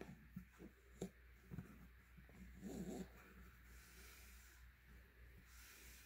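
Near silence, with faint handling of cotton fabric: a few soft clicks and rustles in the first two seconds, and a faint, brief pitched sound near the middle.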